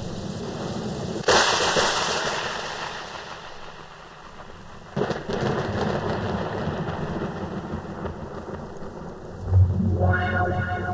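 Thunderstorm sound effect: a sudden thunderclap about a second in that rumbles away over a few seconds, a second clap about five seconds in, all over a steady hiss of rain. A low boom near the end.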